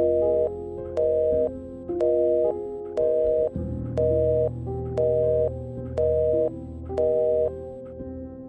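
Telephone call-progress tone beeping in the handset: eight half-second beeps, one a second, on a call that gets no answer, over soft background music.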